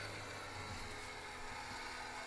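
Fantastic Fan roof vent fan running: a low steady hum with a faint hiss.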